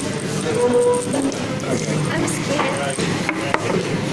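Background chatter of voices and faint music in a busy room, with a couple of sharp clicks a little after three seconds in as a small plastic pill bottle is handled.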